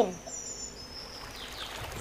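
Faint background birdsong: a few high, thin chirps in the first second over a soft, steady hiss.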